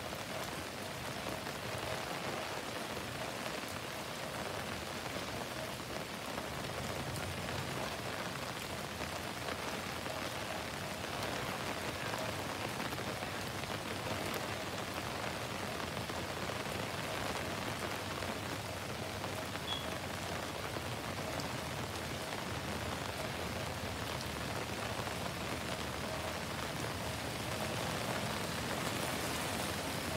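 Heavy rain falling steadily on a street and pavement.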